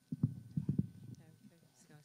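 A handful of dull, low thumps in quick succession in the first second, then faint murmured voices.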